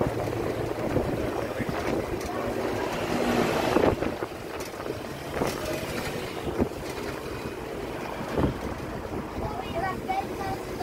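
Wind and road noise on the open upper deck of a moving double-decker tour bus, with the bus engine running low underneath and city traffic around. The rush swells briefly about three to four seconds in, then settles.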